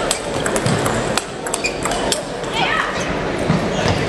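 Table tennis balls clicking sharply and irregularly off bats and tables, over the steady hubbub of many voices echoing in a large sports hall.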